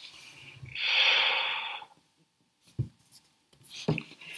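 A person's breathy exhale close to a microphone, a rush of air lasting about a second. A short soft thump and a click follow near the end.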